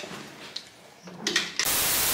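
A loud burst of TV static hiss, a video transition effect, cutting in about one and a half seconds in.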